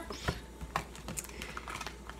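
Tarot cards being handled: a scattering of light clicks and taps.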